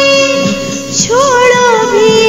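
Hindi light-music song: a female voice holds a note, then starts a new wavering phrase about a second in, over a steady instrumental backing.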